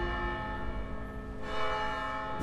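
Bell tones ringing on, several steady pitches held together and slowly dying away.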